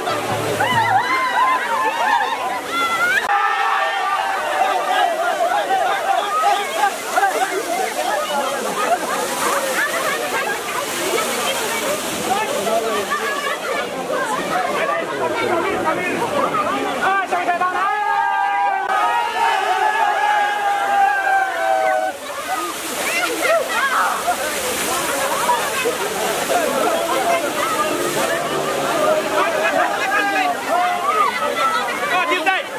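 Many voices shouting and cheering over the rush and splash of water spraying from a pipe. Around eighteen seconds in, a long held note sounds for about four seconds.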